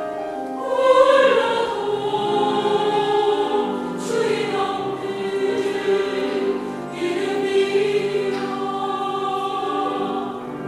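A women's choir singing sustained chords, several voice parts at once, swelling louder about a second in and again around four and seven seconds.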